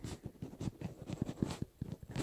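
A stylus writing on a tablet screen as letters are hand-written: a quick, irregular run of short taps and scrapes.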